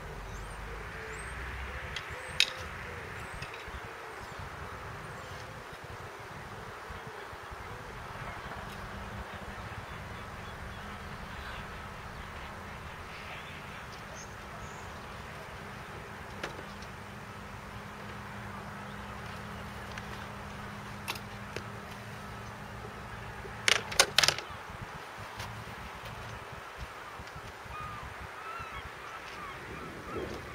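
Wind and outdoor background noise, with a few sharp clicks and clacks of fishing tackle being handled while a tripod rod rest and rods are set up: one click about two seconds in and a loud cluster of clacks about three-quarters of the way through. A faint low drone runs through the middle.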